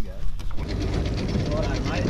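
A small boat's outboard motor running steadily with a rapid even pulse, coming in sharply at a cut about half a second in.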